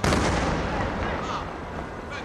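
Aerial firework cylinder shell bursting: one sudden loud boom that rumbles and echoes away over about a second and a half.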